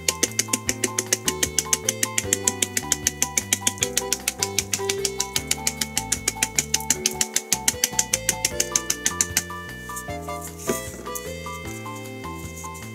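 Plastic salt shaker shaken quickly over fish fillets, about six sharp shakes a second, stopping about nine and a half seconds in. Background music plays under it.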